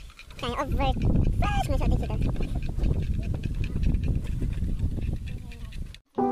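Uneven low rumble on the microphone, with two short wavering vocal calls about half a second and a second and a half in.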